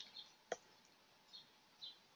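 Near silence: room tone, with one faint click about half a second in and a few very faint high chirps.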